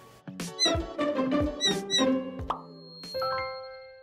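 Short playful logo jingle: quick chirping blips and plucky notes over a low beat. About three seconds in it lands on a ringing chord that fades away.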